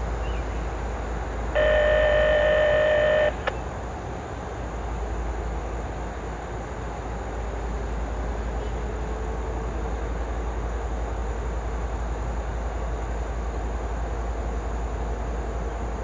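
A CSX GE ET44AH diesel-electric locomotive sitting stopped at idle, a steady low rumble. About one and a half seconds in, a loud steady tone sounds for under two seconds and cuts off sharply, followed by a single click.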